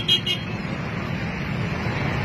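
Steady road traffic noise, with a quick run of high beeps, about eight a second, that stops within the first half second.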